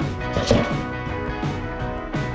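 Background guitar music with a steady beat; about half a second in, a single thump as a squirrel jumps off the lid of a galvanized metal trash can.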